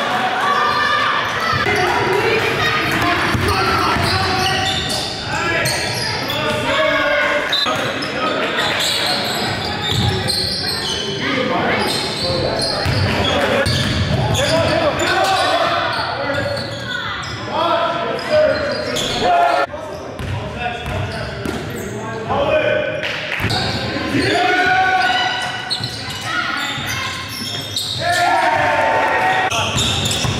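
Basketball dribbled on a hardwood gym floor, with players' voices calling out over the bounces. The sound echoes around a large gym.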